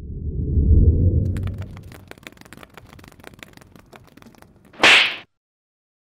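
Animated logo-sting sound effects: a low whoosh swells and fades over the first two seconds, scattered fine clicks follow, and a short bright swish comes about five seconds in.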